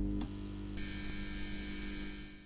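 Steady electrical hum and buzz of a neon light, used as a sound effect for a glowing neon logo, with a short click about a quarter of a second in and a higher buzz joining about a second in.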